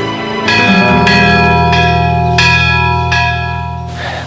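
Church bells ringing: several strikes, each leaving a long ringing tone that fades slowly, over a deep sustained hum.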